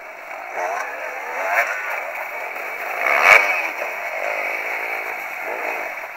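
Enduro motorcycle engines revving up and dropping back several times, with the loudest rev a little past the middle.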